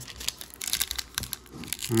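Foil trading-card pack wrappers crinkling in a quick, irregular run of crackles as they are handled and opened.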